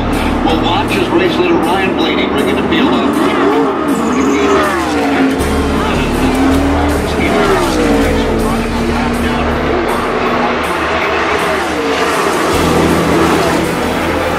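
NASCAR Cup stock cars' V8 engines racing past at speed, several engine notes swooping down in pitch as the cars go by, with a pack passing in the middle.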